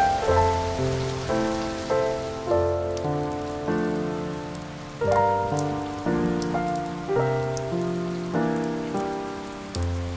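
Slow, soft instrumental music of struck notes and chords that ring and fade, over a steady bed of rain with scattered drops ticking.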